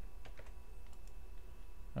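A few scattered keystrokes on a computer keyboard, typing and pasting code, over a low steady hum.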